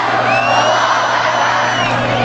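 Large crowd of protesters chanting together in unison. A high, whistle-like note starts early, holds steady for about a second and a half above the chant, and drops away near the end.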